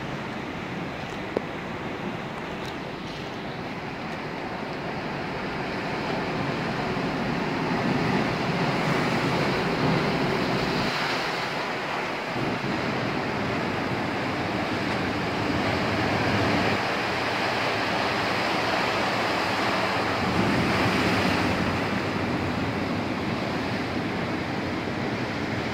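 Sea surf breaking and washing over a rocky shore: a continuous rushing of waves that swells louder several times as bigger waves come in.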